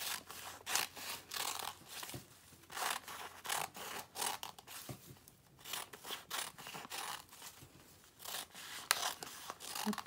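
Scissors cutting fringe strips into folded layers of tissue paper: a run of short, crisp snips, about two a second, with the paper rustling between cuts and a brief pause midway.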